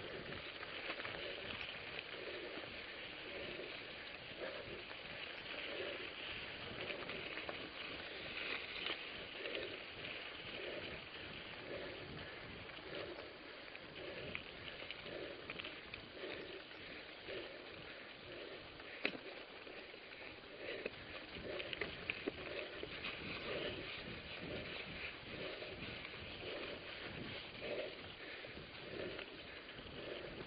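Mountain bike rolling slowly uphill over loose dirt and gravel: a steady crackling rustle, with a soft pulse about once a second.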